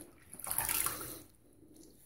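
Water splashing as a face is rinsed with handfuls of water at a sink, washing off the shaving lather after a straight-razor pass. One main splashing burst about half a second in, lasting about a second, then fainter drips and splashes.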